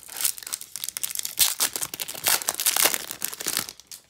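The crimped foil wrapper of a Topps baseball card pack being torn open and crinkled by hand: a dense run of sharp crackles and rips that stops just before the end.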